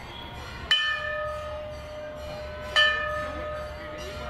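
Large hanging brass temple bell struck by hand twice, about two seconds apart. Each strike rings on with a steady, lingering tone.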